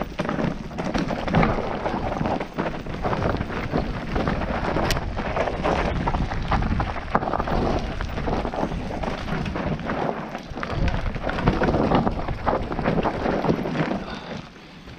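Mountain bike descending a steep, loose dirt trail: tyres skidding and scrabbling over dusty dirt and stones while the bike clatters over the bumps, a continuous uneven noise with many sharp knocks.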